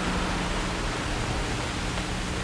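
Steady hiss with a faint low hum underneath: background noise of an old analogue film or tape soundtrack.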